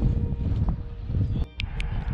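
Wind buffeting the camera microphone in gusty low rumbles. The sound drops out briefly about three-quarters of the way through, and a few sharp clicks follow.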